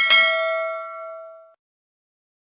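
A bell ding sound effect for the notification bell of a subscribe animation: one bright struck chime that rings out and fades away over about a second and a half.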